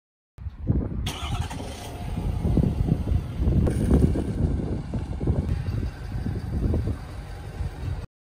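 Ford pickup truck's engine running as it slowly reverses up to a trailer hitch, a low uneven rumble that starts suddenly about half a second in.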